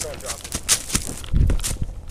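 Quick running footsteps and crackling clicks on leaf-strewn ground, with a dull thump about a second and a half in.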